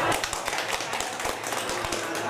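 A small group of people clapping by hand, many quick irregular claps, with some talk underneath.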